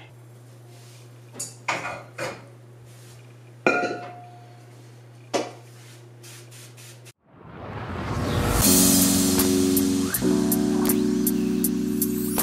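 Objects being moved on glass-and-metal shelving: a few light clicks and one clear, briefly ringing clink of an item set down on glass, over a steady low hum. About seven seconds in, a cut brings in loud background music with held chords and plucked guitar-like notes.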